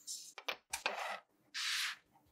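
Hard plastic square frame knocking and scraping on a tabletop as it is set down, a few sharp clicks then a louder scrape. Near the end, a short, bright rub as a hand grabs a lump of kinetic sand.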